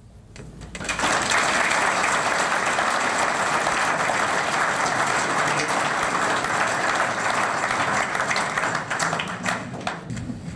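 Audience applauding: steady clapping that begins about a second in and fades near the end.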